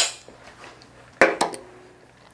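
Sharp hard clacks of handheld hair-cutting tools, comb and razor, being handled: one at the very start, a louder one a little over a second in with a lighter one just after, and a faint click near the end.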